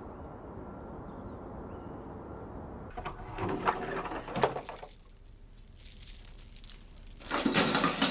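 Metal chain rattling and clinking: a short run of clinks about three seconds in, then a louder, longer jangle near the end, over a low steady rumble.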